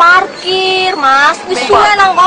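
A high-pitched voice singing, with long held notes that bend slightly in pitch.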